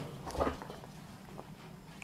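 A brief, faint sound from a civet about half a second in, as the cover is taken off its cage, followed later by a faint click.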